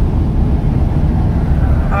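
Steady low rumble of road, engine and wind noise inside the cabin of a moving van.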